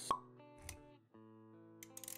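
Intro sound effects over background music: a short, sharp pop just after the start, the loudest sound, then a softer low thump. The music's held notes drop out briefly and come back about a second in.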